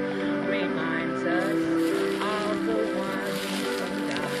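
A woman singing a solo song over a recorded instrumental accompaniment, her voice wavering on held notes above steady backing chords.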